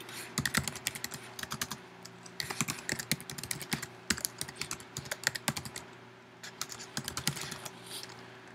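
Typing on a computer keyboard: quick runs of keystrokes in three bursts with short pauses between, over a faint steady hum.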